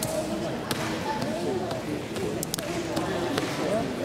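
Indistinct background chatter of several voices in a gymnasium, with a few faint sharp knocks.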